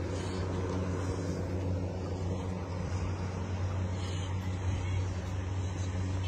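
A steady low hum of an engine or motor running, even in level.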